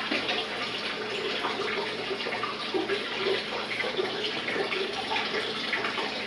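Water running and splashing steadily.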